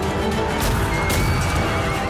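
Film battle soundtrack: horses galloping and a horse whinnying about a second in, over loud dramatic music.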